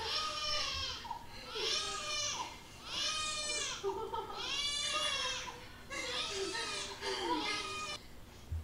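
Newborn baby crying, a series of about six high-pitched wails that rise and fall, each under a second long.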